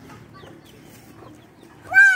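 A chicken gives one loud squawk near the end, rising then falling in pitch; before it there is only faint background sound.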